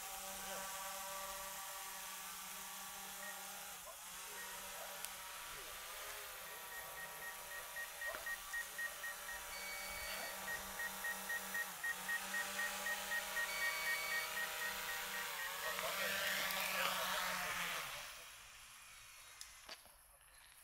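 Small quadcopter drone's propellers whining as it hovers and manoeuvres low, the pitch shifting up and down several times. The whine stops abruptly a couple of seconds before the end as the drone lands and its motors cut out. A rapid string of short beeps sounds through the middle.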